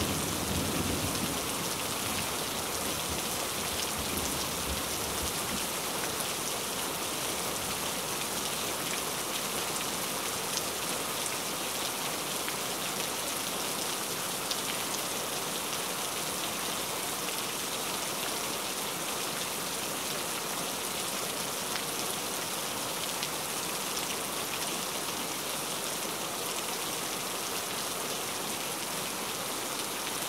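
Steady rain, a dense even hiss with faint scattered drop ticks, with the tail of a low thunder rumble dying away in the first second.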